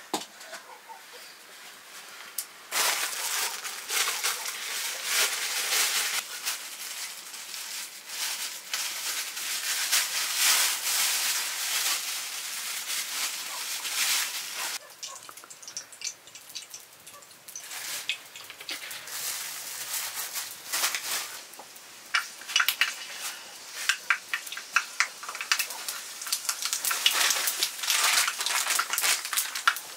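Seeds frying in hot oil in an iron pan over a wood fire: a sizzle that starts suddenly about three seconds in and runs on with many small crackling pops.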